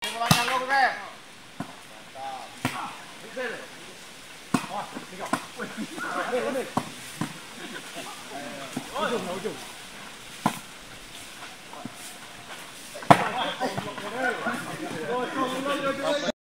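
Volleyball rally: the ball is struck by hand again and again, giving sharp slaps every second or few, the loudest about thirteen seconds in, while players and onlookers call out and shout.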